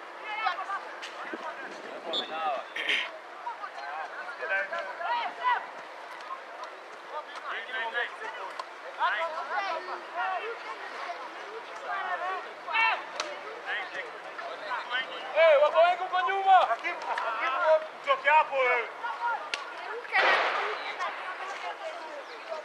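Several voices of players and onlookers shouting and calling out during a football match, overlapping and coming in short calls, louder about two-thirds of the way through, with a brief rush of noise near the end.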